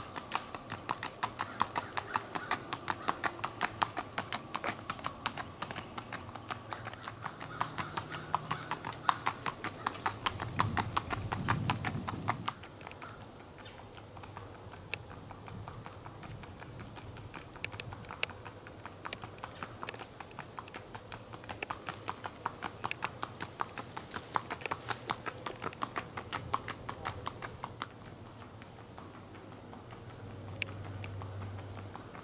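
Hooves of a ridden horse clip-clopping on an asphalt road in a quick, even rhythm, fading for a few seconds in the middle and then coming back. A low rumble swells about ten seconds in.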